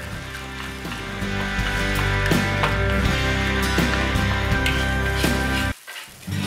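Background music: sustained chords that change every second or so. It cuts out briefly just before the end.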